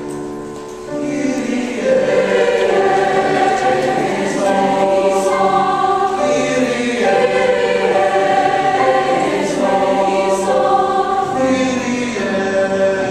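Mixed-voice choir singing the opening movement of a Requiem Mass setting in sustained chords. The singing is softer at first, swells about a second in, and holds full from there.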